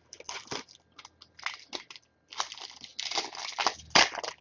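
Foil wrappers of Score football card packs crinkling and crackling as they are handled and opened, a string of short crackles that grows denser near the end.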